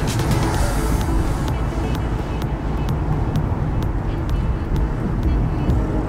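Background music with a steady beat, its high ticks falling about twice a second over a heavy bass, with a brief swish of hiss in the first second.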